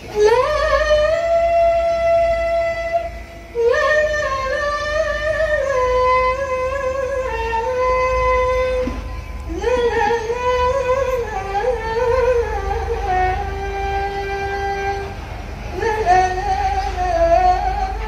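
A female qasidah singer with a rebana group singing a slow melody in long held, wavering notes, in four phrases with short breaks about 3.5, 9 and 15.5 seconds in, over faint accompaniment.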